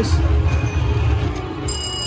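Buffalo Rush slot machine playing its free-spins bonus music with a heavy bass while the reels spin. Steady bell-like chime tones start near the end.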